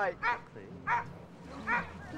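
A dog barking in short yips, three times about two-thirds of a second apart.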